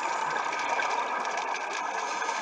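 Scuba diver's exhaled bubbles from the regulator, heard underwater as a steady bubbling rumble with a faint crackle.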